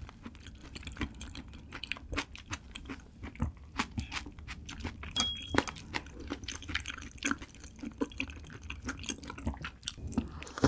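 Close-miked chewing of raw seafood: a steady run of short, wet mouth clicks. About five seconds in comes a brief ringing clink, chopsticks touching the ceramic plate.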